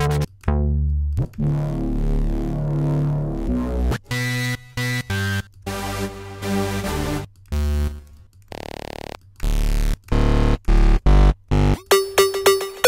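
Sylenth1 software synthesizer presets auditioned one after another: held chords over a deep bass for the first few seconds, then a run of shorter notes, a brief swoosh of noise, and short punchy chords with deep bass hits near the end.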